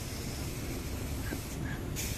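Compressed air hissing steadily through a homemade powder coating gun, a sugar jar fitted with a PVC pipe, as it blows powder. The hiss thins out briefly near the end and then comes back.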